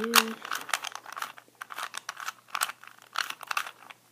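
Plastic 2x2 Rubik's cube being turned quickly by hand, its right and top layers clicking and clacking several times a second in an uneven run. The moves are a repeated right-face/top-face sequence that brings the cube back to solved.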